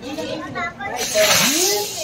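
A firework hissing as it sprays sparks, starting about a second in.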